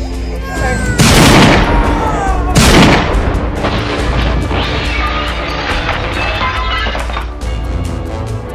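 Two revolver gunshots about a second and a half apart, each with a short ringing tail, over background music.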